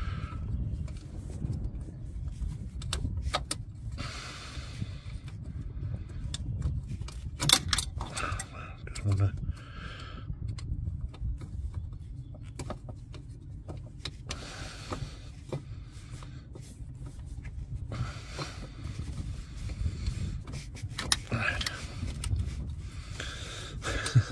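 Scraping and clicking of a metal pick tool being worked round rubber coolant hoses and their plastic connectors, with scattered knocks, to free hoses stuck fast to the auxiliary water pump's fittings.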